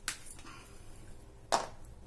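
Two sharp clicks from painting supplies being handled, a faint one at the start and a louder one about a second and a half in, as the palette knife is put down and a small plastic bottle of yellow paint is picked up.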